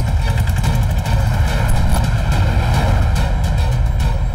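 Film soundtrack: a loud, steady low rumble under background music, with no dialogue.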